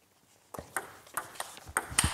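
Table tennis ball clicking off rackets and the table in a short rally: a serve, a chiquita (banana flick) receive and a third-ball forehand attack. It is a quick run of about six sharp clicks starting about half a second in.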